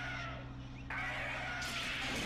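Sound effects from a tokusatsu transformation sequence over a steady low hum. The upper sounds thin out briefly, then a sudden noisy swell with gliding tones comes in about a second in.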